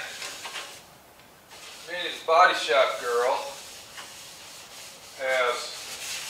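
Rubbing and scrubbing inside a stripped car body as the interior is wiped clean of dust and dirt. Two short bursts of a voice break in, the louder about two seconds in and another a little after five seconds.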